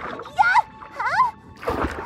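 Cartoon soundtrack: music with short gliding, squeaky comic notes, then a rushing whoosh near the end.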